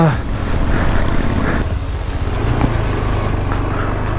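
KTM 390 Adventure's single-cylinder engine running steadily under load as the motorcycle climbs a gravel road, with wind noise over the microphone.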